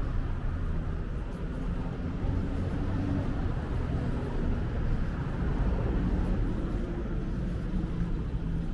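Street ambience: a steady low rumble of road traffic, with no distinct events standing out.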